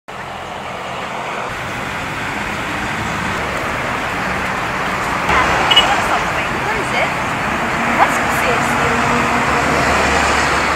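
Steady road traffic noise from passing cars and trucks, fading in and growing louder over the first few seconds.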